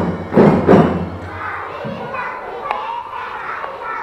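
Three heavy percussion hits in the first second end the drum-band music. Then comes a steady murmur of children's and audience voices.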